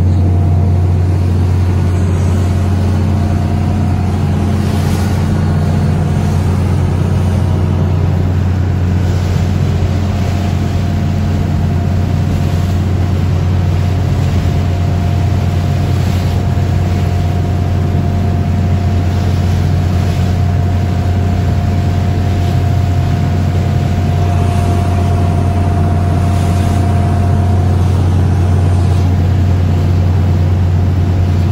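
A lobster boat's engine running steadily while underway, a constant low drone with a faint higher whine through most of it, over the wash of water along the hull.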